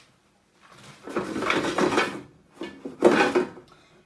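Air fryer drawer and basket being handled and slid shut: two scraping, rattling stretches a little over a second apart, the second louder with a knock in it.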